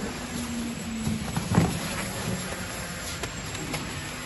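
Corrugated cardboard carton sheets being picked up and handled, with one knock about a second and a half in and a few faint taps, over the steady low hum of the carton-making machine running.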